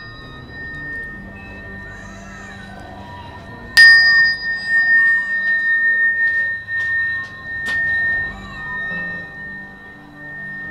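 A sound-healing tuning fork struck about four seconds in and left ringing: one clear, steady high tone with a fainter higher overtone, fading slowly. The tone of an earlier strike is dying away at the start, and there is a lighter tap near the end.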